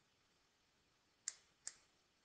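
Two short, sharp taps of a pen tip on an interactive whiteboard as a formula is handwritten, the second about a third of a second after the first; otherwise near silence.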